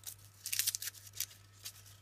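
Kinder Egg foil wrapper crinkling in the hand: a few short rustles, busiest in the first second, then fainter.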